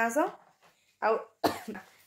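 A short throat sound about a second in, then a single sharp cough about a second and a half in.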